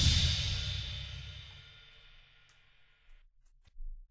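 The last chord of a heavy metal track dying away, cymbals ringing out and fading to silence over about a second and a half. A short soft bump near the end.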